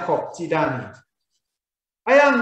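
A man speaking for about a second, then cut off into dead silence.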